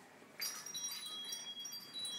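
High, tinkling chime tones: several overlapping thin ringing notes start about half a second in and ring on.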